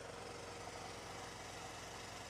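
An engine idling steadily, a constant hum with a faint even tone over a haze of outdoor noise.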